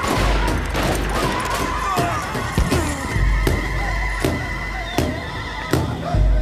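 Film soundtrack of a gunfight: a horse neighs under repeated sharp revolver shots, about one every half second to second, over a dramatic music score.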